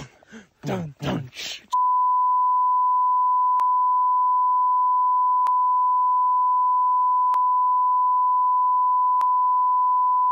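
A steady, single-pitched censor bleep tone that begins about two seconds in and covers the speech at constant loudness, with a faint click about every two seconds.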